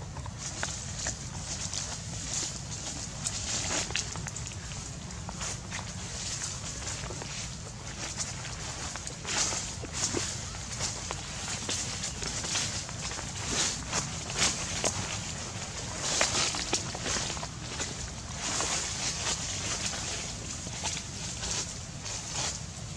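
Irregular rustles and scuffs on dry dirt and leaf litter, short noisy bursts coming every second or so, from monkeys moving about on the ground.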